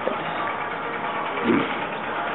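Street noise of vehicle engines running steadily, with a brief low sound about one and a half seconds in.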